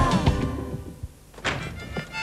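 TV station ident jingle ending, its music fading out over the first second. About one and a half seconds in there is a single sharp thud.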